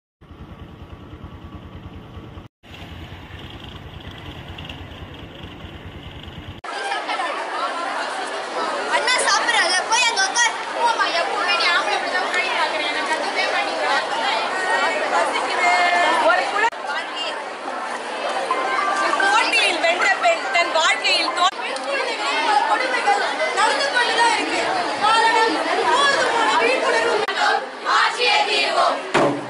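Chatter of a large crowd of young women, many voices talking over one another, starting abruptly about a quarter of the way in. Before it, a quieter low steady rumble.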